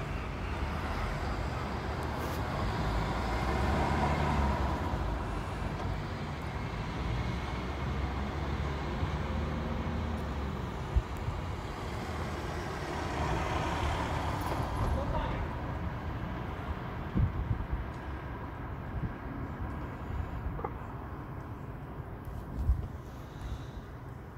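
Urban street background: road traffic going by, with a steady low rumble and two vehicles swelling past, one a few seconds in and one about halfway through, plus a few sharp clicks.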